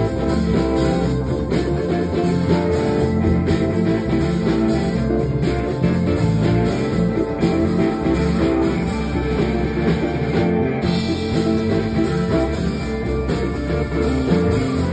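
Live soul band playing an instrumental groove on guitar, bass, drums and keyboards, with no singing.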